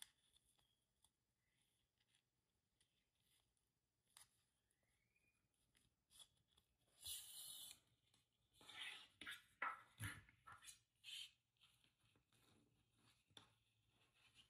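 Faint sounds of ribbon being hand-sewn and handled: a soft swish about seven seconds in as thread is drawn through the ribbon, then a cluster of light rustles and taps as the ribbon is pressed and arranged on a table.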